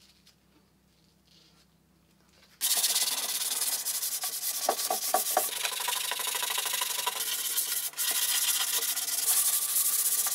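Near silence for the first couple of seconds, then painted wood being sanded by hand, a steady scratching that runs on without a break. The yellow paint is being rubbed through to bare wood to give the planter a worn, aged look.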